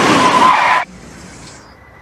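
A loud, noisy screech with a faint wavering tone in it, like a tyre-skid sound, cut off abruptly just under a second in; a quiet background follows.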